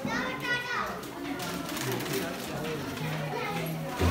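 Background chatter of several voices with children playing; a high-pitched child's voice calls out in the first second.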